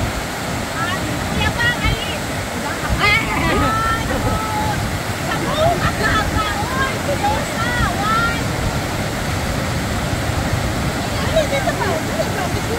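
Steady rush of water from a many-tiered cascading waterfall and the rapids of the river below it, with scattered voices of people over it.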